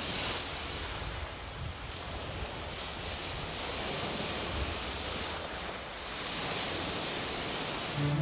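Sea waves washing in, a steady rush of surf that swells and eases several times.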